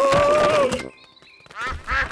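Cartoon ducks quacking: a short, quick run of quacks near the end, after a drawn-out voiced "oh" and a brief silence.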